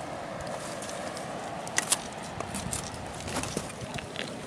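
Handling of tangled washed-up rope, netting and seaweed on a pebbly shore: soft rustling with a few scattered sharp clicks, the clearest pair just under two seconds in, over a steady background wash.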